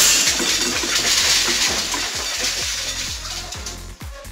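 Electronic background music with a steady, regular beat, under a loud hissing rush that starts at the outset and fades away over the next few seconds.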